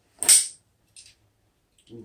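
Kershaw/Emerson folding training knife drawn from a pocket and flicked open by its Emerson Wave hook: a loud, sharp snap with a short swish about a quarter second in, then a much fainter click about a second in.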